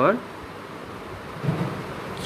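Steady background hiss and rumble of a home voice recording during a pause in speech, with a short low voice sound about one and a half seconds in.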